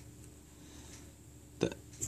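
Quiet room tone, broken about one and a half seconds in by one short mouth or throat sound from a person, just before speech resumes.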